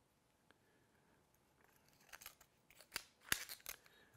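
A string of small sharp clicks and snips from handling fly-tying tools and wire at the bench. They start about a second and a half in, after a near-silent stretch, and the loudest comes a little past three seconds.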